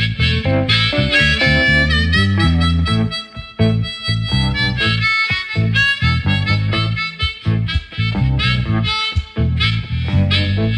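Blues harmonica solo, the harp cupped against a handheld vocal microphone, over a guitar band accompaniment, with long held notes about three seconds in.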